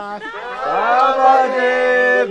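A group of people singing a birthday song in long held notes, one voice sliding up into a higher held note about half a second in.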